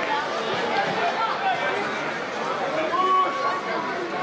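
Shouts and chatter of players and a small crowd on the ambient sound of a football match, several voices overlapping, with one drawn-out call about three seconds in.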